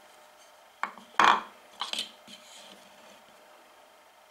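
A few short knocks and clinks as the wooden wedge of a wooden coffin smoother is set into the plane's wooden body and the steel plane iron is handled, the loudest a little over a second in.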